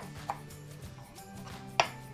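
Chef's knife chopping dill on a wooden cutting board: a few scattered knocks of the blade on the board, the loudest near the end.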